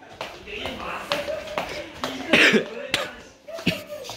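A man coughing and making short voice sounds, with a few sharp knocks scattered through.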